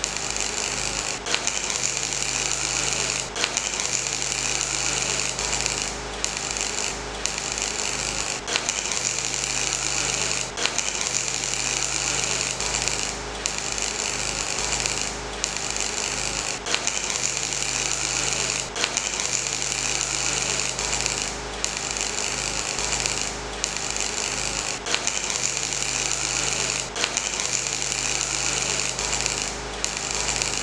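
A power tool running continuously, its noise strongest in a high hiss, with a short stutter roughly every two seconds.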